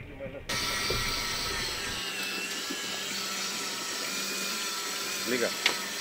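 Electric fishing reel motor winding in line: a steady mechanical whir with a high whine, starting suddenly about half a second in.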